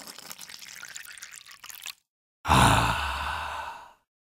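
Gulping, swallowing sounds of someone drinking from a bottle for about two seconds. After a brief pause comes a loud exhaled sigh that fades away.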